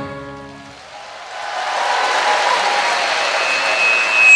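The last sung chord of a vocal group with band dies away, and about a second in a hall audience's applause rises and continues steadily.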